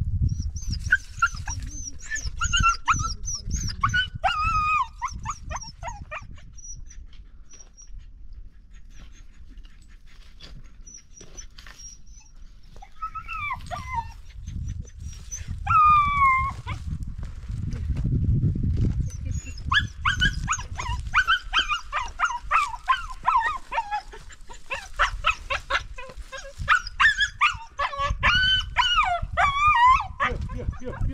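A dog giving high-pitched whining cries, in runs of short calls that rise and fall. They come in the first few seconds, again about halfway through, and almost without a break over the last ten seconds, above a low rumbling noise.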